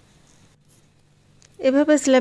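Quiet room with a faint low hum. Then, about three-quarters of the way through, a woman's voice begins speaking and becomes the loudest sound.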